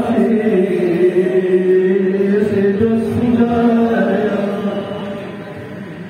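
A voice chanting a Balti devotional qasida, holding long drawn-out notes that bend slowly in pitch; the phrase fades away near the end.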